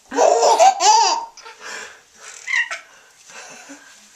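A baby laughing: a loud run of laughs in the first second or so, then quieter, breathy laughs and sounds.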